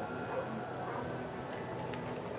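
Quiet background ambience: a faint steady hum with a couple of light ticks.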